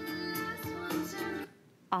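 Music from a CD playing on a Bose Wave Music System IV, cutting off suddenly about one and a half seconds in as the system is switched off with its remote.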